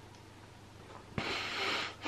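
A sharp breath drawn through the nose about a second in, a short breathy rush lasting under a second, after quiet room tone.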